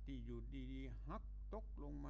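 A man's voice talking in drawn-out syllables, over a steady low hum.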